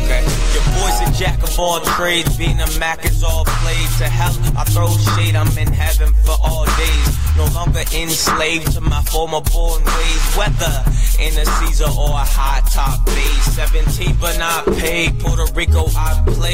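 Christian hip hop track playing: a male rapper's vocal over a beat with a deep bass line.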